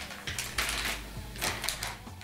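Rustling and crinkling of a sealed defibrillation-pad packet being handled and put back into the monitor's carry bag, in two bursts about a second apart.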